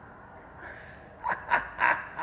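A man's three quick, breathy, excited gasps or huffs in a row, like laughter, over low garage room tone.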